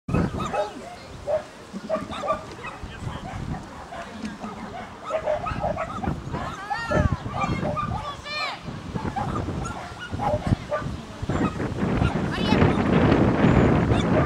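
A small terrier barking in short, repeated yaps as it runs, with a person's calls mixed in.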